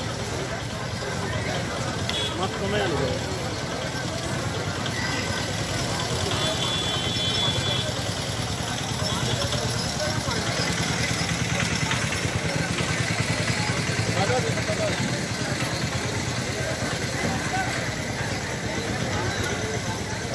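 Street noise: a vehicle engine running steadily at idle, with people talking in the background.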